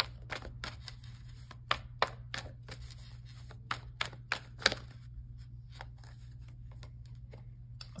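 Tarot cards handled and shuffled, a string of short light clicks and snaps for about five seconds, after which only a low steady hum remains.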